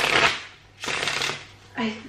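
A tarot deck being hand-shuffled: two quick shuffles of about half a second each, one right after the other.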